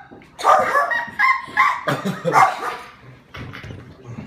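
A boy laughing hard in a run of short bursts for about two and a half seconds, then dying down.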